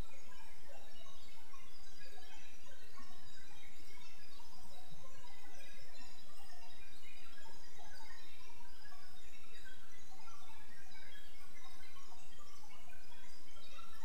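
Steady background hiss with scattered faint chirps and no speech.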